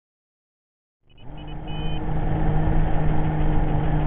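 5-inch FPV quadcopter on the ground: a few short high beeps, the last one longer, then its motors idling with a low steady hum that builds in about a second in.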